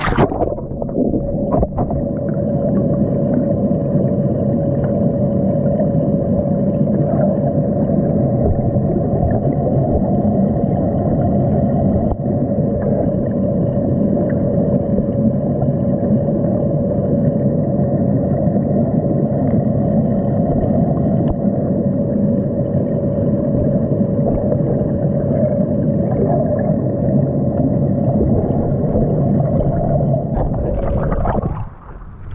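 Muffled underwater sound from a submerged camera: a steady low rumble of moving water with a constant humming tone, and a few faint clicks.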